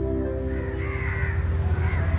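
Crows cawing a few times in the background over a steady low hum.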